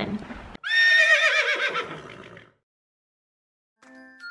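A horse whinnying: one loud, quavering call of about two seconds that falls in pitch as it fades out.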